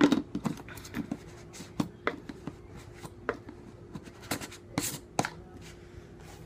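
Irregular light clicks, taps and scrapes of a protein-powder scoop and tub being handled as a scoop of powder is tipped into a blender cup, over a faint steady hum. The loudest knock comes at the very start.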